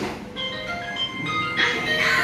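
Simple electronic jingle from a children's battery-powered ride-on toy car's speaker: single beeping notes stepping up and down in pitch. A rushing noise joins near the end.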